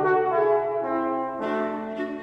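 Chamber orchestra playing held chords that move in steps every half second or so, with brass (horn and trombone) to the fore over the strings.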